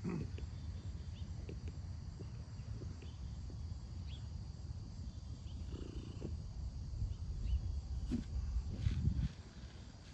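Wind buffeting the microphone as a rough, uneven low rumble that cuts off about nine seconds in, with a few faint short ticks above it.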